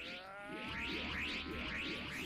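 Anime soundtrack playing: several held tones drifting slowly upward, with a fast repeating swish over them.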